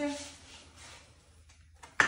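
The tail of a spoken word, then low room tone in a small room with faint handling noise, and a single sharp knock right at the end.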